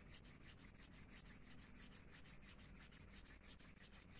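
Near silence: faint room tone with a hiss that pulses about eight times a second.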